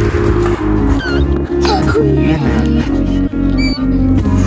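Newborn puppy squeaking in several short, high cries over background pop music with a steady beat.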